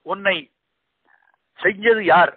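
Speech only: a man speaking Tamil. One short drawn-out word opens, then a pause of about a second, and he speaks again near the end.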